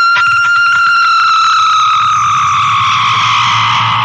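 Distorted electric guitar on a 1984 speed metal demo tape, holding one high sustained note that starts abruptly and slowly sinks in pitch.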